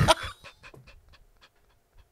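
Men's breathy, almost voiceless laughter: a run of short puffs of breath that thin out and fade away within about a second and a half.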